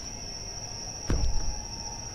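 Crickets chirping in a steady high trill in the background, with a spoken word about a second in.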